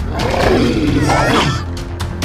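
A cartoon monster's roar, rough and wavering in pitch, lasting about a second and a half, over background music with sustained low notes.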